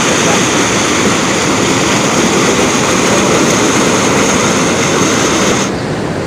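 Water pouring through the open sluice gates of a river dam: a loud, steady roar.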